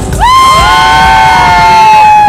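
A few people letting out a loud, long held cheer together close to the microphone. It rises in pitch at the start and then holds steady.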